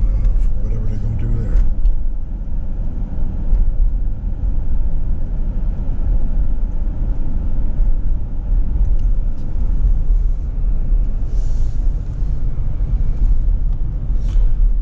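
Steady low rumble of road and engine noise inside the cab of a moving vehicle as it drives along a city street.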